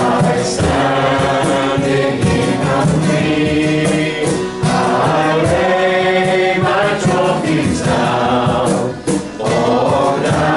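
Men's and women's voices singing a hymn together, accompanied by acoustic guitar, in phrases with short breaks between them.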